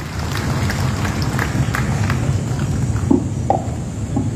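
Applause from a small crowd, with separate hand claps standing out over a low steady rumble.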